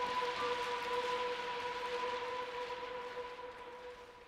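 Women's choir holding a sustained note in octaves, with a soft breathy hiss over it. The note fades away near the end.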